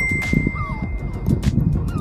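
A single high, bell-like ding sound effect, held as one steady tone for about a second and a half and then fading, over background music with a low beat.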